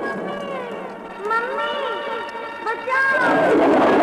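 Children's frightened cries and wails as they run from the giant, a wordless radio-drama effect. A louder, noisier surge comes in about three seconds in.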